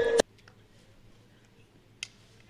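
Near silence after a commentator's voice cuts off abruptly at the very start.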